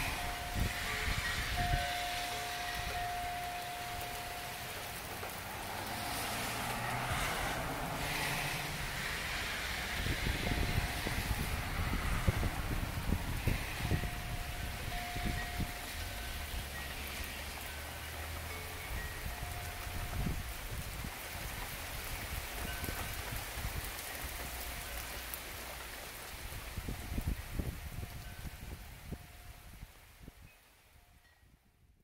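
Steady rain falling on a wet concrete sidewalk and lawn, fading out near the end.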